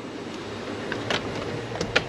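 Front door's lever handle and latch clicking a few times as the door is opened, over a steady background noise.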